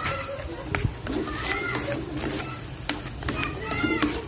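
Cooking utensils clicking and scraping against a wok while a stir-fry of sea snail meat and vegetables is stirred, with voices in the background.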